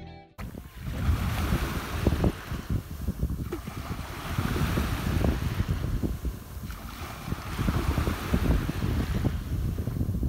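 Small waves washing up over a sandy beach, the surf swelling and falling back about every three and a half seconds, with wind buffeting the microphone.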